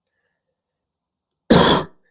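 A single short, loud cough, about one and a half seconds in.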